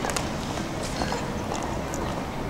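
Footsteps on hard pavement: irregular sharp clicks over a steady outdoor noise haze.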